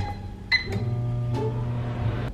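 Microwave oven keypad beep, then the microwave starts and runs with a steady hum.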